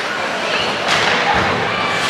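Ice hockey play heard from rinkside: a steady wash of skates on the ice and spectator voices, with one sharp knock against the boards about a second in.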